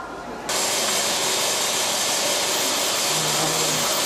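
Dental suction hissing steadily, starting abruptly about half a second in as it draws air and saliva from a patient's mouth during treatment.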